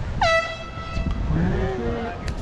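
A single air horn blast, about a second long, that slides down in pitch at its start and then holds one steady note.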